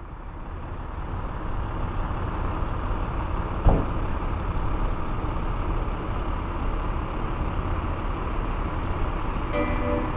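Street traffic noise with a steady low rumble as a stretch limousine drives along the road. It fades in over the first couple of seconds, and there is one short thump a little under four seconds in. Music notes begin just before the end.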